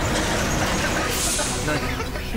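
Dramatic sound-effect bed: a steady rushing noise with a brief sharp hiss about a second in.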